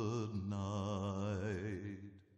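A slow lullaby sung in long held notes with a wavering vibrato; the note changes about half a second in, and the singing fades away at the end.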